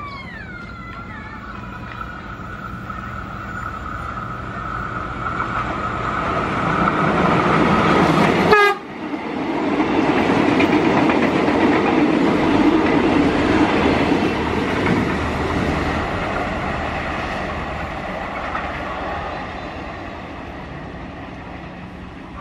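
Prameks commuter train sounding a long, steady horn blast as it approaches while its running noise grows louder; the horn and noise cut off abruptly about a third of the way in. Then a train passes close at speed: a loud rush of wheels on rail that swells and slowly fades.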